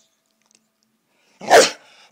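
A Staffordshire Bull Terrier gives one short, loud, gruff bark near the end, an angry, annoyed dog's warning.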